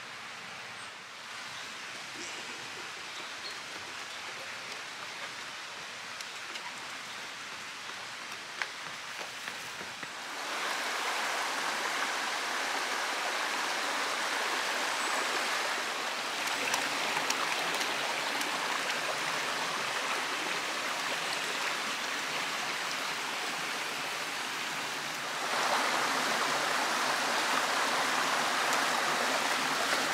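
Shallow stream running over rocks and stones: a steady rush of water. It grows louder about ten seconds in and again near the end.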